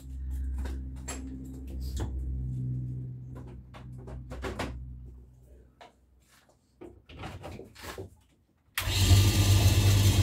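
A recycled clothes-dryer motor driving a homemade metal lathe's spindle by a belt hums low and fades as it runs down after being switched off. A few clicks follow as a mains plug is handled, then about nine seconds in the motor is switched on and starts at once into a loud steady hum.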